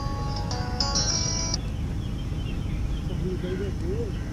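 A short melody of held notes stepping from one pitch to the next over a steady low rumble, ending about a second and a half in; a faint distant voice near the end.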